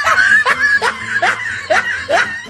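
Canned laugh sound effect after a joke's punchline: a high-pitched giggling laugh in short rising 'hee' sounds, about three a second.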